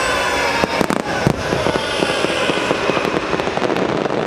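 Aerial fireworks going off: a run of sharp bangs and crackles, the loudest cluster about a second in, over a steady noisy background.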